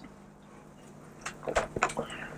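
A quiet room, then a quick run of small clicks and knocks in the second half, as the soft drink is sipped from small drinking glasses.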